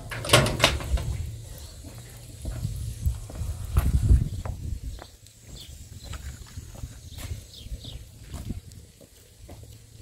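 A metal gate's lock and bars rattle and clank in the first second. Then a low rumble of wind on the microphone, loudest about four seconds in, gives way to quieter footsteps on a muddy lane with a few short, faint animal calls.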